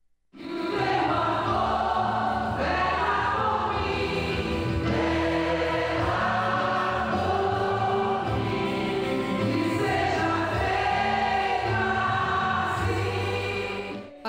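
Many voices singing a religious hymn together in a steady, continuous choral line. It starts a moment in, after a brief silence.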